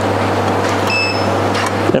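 Soft-serve ice cream machine running steadily as soft-serve is dispensed from it, a low hum with a broad whir over it. A short high beep sounds just under a second in.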